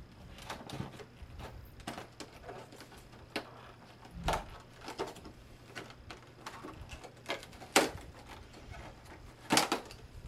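Irregular clicks and crackles of a plastic advent-calendar compartment and its packaging being opened and handled, with a few sharper clicks about four seconds in and near the end.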